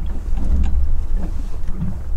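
Wind buffeting the microphone, heard as a steady low rumble.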